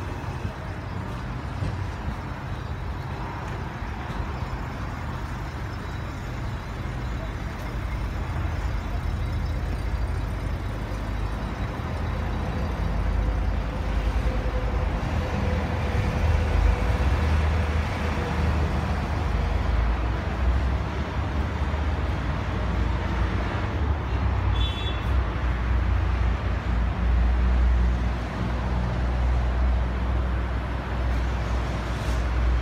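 Steady outdoor background noise dominated by a low, uneven rumble that grows louder about a third of the way in.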